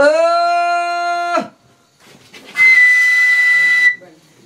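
A long blown note, rich and horn-like, that slides up as it starts, holds for about a second and a half and falls away. After a short pause comes a shrill, breathy whistle on one steady high pitch, also about a second and a half long.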